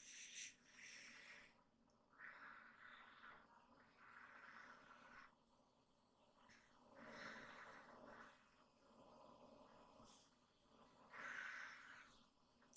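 Faint, slow breathing close to the microphone, each breath a soft rush of air lasting about a second, coming roughly every two seconds.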